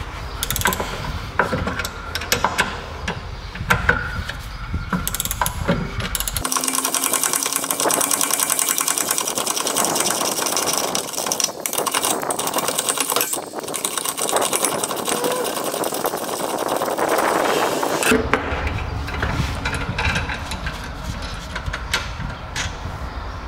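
Socket ratchet working a brake caliper carrier bolt on a BMW E39 rear hub. First come scattered metal clinks and knocks as the wrench is fitted, then from about six seconds in a long run of rapid ratchet clicking while the bolt is turned.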